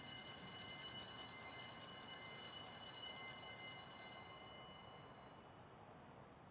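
Altar bells, a cluster of small bells shaken in one continuous ring that dies away about five seconds in, marking the elevation of the chalice at the consecration.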